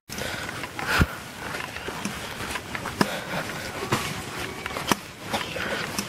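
Footsteps on a dirt trail with the rustle of carried bags and gear, and a few sharp knocks or clicks about a second apart.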